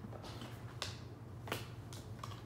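Tarot cards being handled and set down on a glass tabletop: two sharp clicks about two thirds of a second apart, over a steady low hum.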